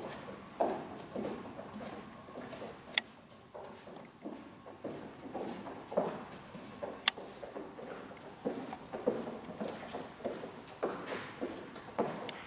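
Footsteps of a person and a dog walking on a padded floor: a run of soft, uneven steps. There are two sharp clicks, one about three seconds in and one about seven seconds in.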